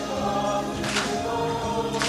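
Mixed men's and women's worship group singing a hymn together over band accompaniment, with a sharp percussive hit on the beat about once a second.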